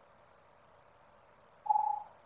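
A cat gives one short, steady-pitched mew near the end, after a quiet stretch.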